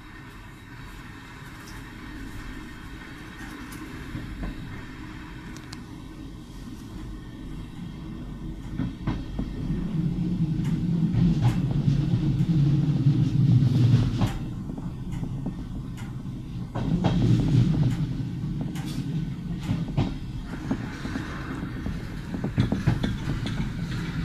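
Train running along the track, heard from on board: a low rumble that swells about ten seconds in and again a few seconds later, with sharp wheel clacks over rail joints and points. A faint steady high tone runs through much of the middle.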